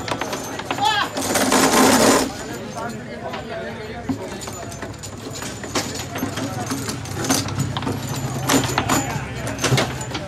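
Table football game on a wooden foosball table: quick sharp clacks and knocks of the ball and plastic players against the metal rods and wooden sides, under people talking. There is a loud burst of noise about a second in.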